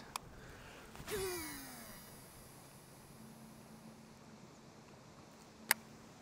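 Shimano Curado DC baitcasting reel during a cast: a click about a second in, then the whine of its electronic DC braking system, falling in pitch over about a second as the spool slows. A single sharp click comes near the end.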